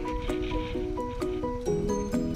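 Background music: a steady rhythmic pattern of struck notes, with a change of chord near the end.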